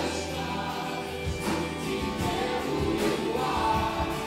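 A live band playing: several voices singing together in unison and harmony over acoustic and electric guitars, keyboard and drums, with drum and cymbal hits marking the beat.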